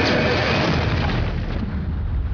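A deep boom with a low rumble that carries on and slowly dies away.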